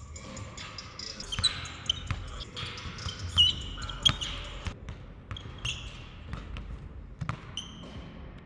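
Basketball dribbled hard and fast on a hardwood gym floor, with sneakers squeaking sharply several times as the player cuts. The loudest bounces come about three and a half and four seconds in.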